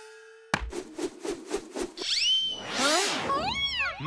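Cartoon sound effects: a sharp whack about half a second in, a quick run of ticks, then sliding whistle and boing tones that rise and fall, over light music.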